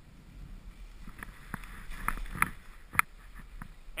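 Skis moving through deep powder snow: a low rustling hiss broken by a series of sharp clicks and knocks, the loudest about three seconds in.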